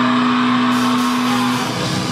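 A heavy metal band playing live: one low, distorted note is held steady over the noise of the room, and the rest of the band comes in near the end.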